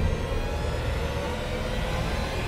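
Dark, suspenseful trailer music holding a low, steady drone with faint sustained tones.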